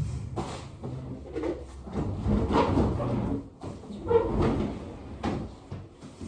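Belongings and cardboard boxes being handled and set down, with rustling and a series of knocks and bumps. The loudest bump comes right at the start, close to the microphone.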